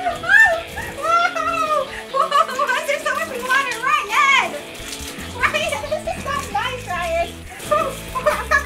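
A woman and a child crying out and squealing without words, over background music.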